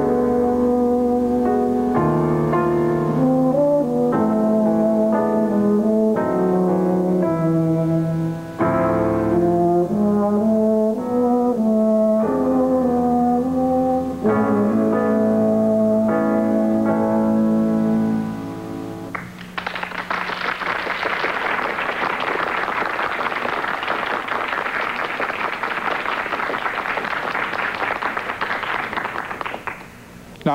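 Euphonium solo with piano accompaniment, a melody of sustained notes that ends on a long held note about 19 seconds in. Audience applause follows for about ten seconds.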